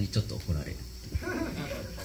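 Speech: a man talking into a handheld microphone, in what is most likely untranscribed Japanese.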